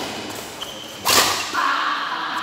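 Badminton rally: a light racket-on-shuttlecock hit at the start, then, about a second in, a loud swish and smack as a racket strikes the shuttlecock close by.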